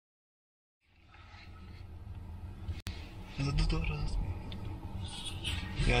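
After a second of silence, a steady low background hum fades in, cut briefly just before three seconds, then a man speaks a few words in a car cabin.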